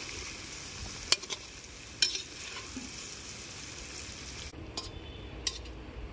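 Masala-stuffed small brinjals frying in hot oil in an aluminium kadhai, sizzling steadily while a metal slotted spoon turns them. The spoon clicks sharply against the pan twice. Near the end the sizzle falls away, leaving a few light clicks.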